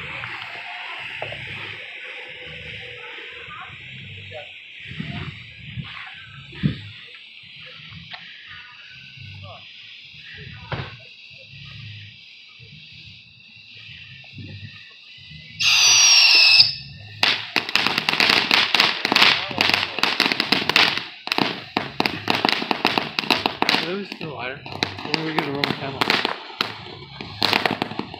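Ground spark-fountain firework burning with a steady hiss that slowly fades. About sixteen seconds in comes a short shrill whistle falling in pitch, then dense, rapid crackling for the rest.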